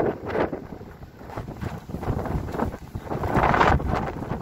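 Wind buffeting a phone's microphone in uneven gusts, with a strong gust about three and a half seconds in.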